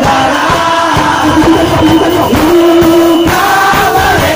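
Punk band playing live: loud singing with held notes over steadily pounding drums and band.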